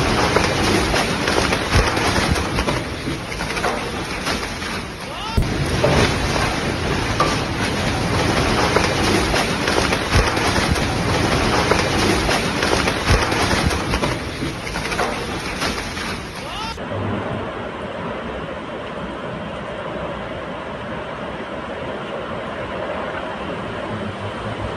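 Tornado-force wind and heavy rain battering a phone microphone: a loud, rough rush of noise with scattered knocks of flying debris. About two-thirds through it changes to a steadier, duller wind noise.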